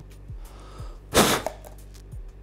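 One short, hard puff of breath blown across a quarter, about a second in, to lower the air pressure above it so that it jumps up into a plastic cup. Quiet background music with a low beat runs underneath.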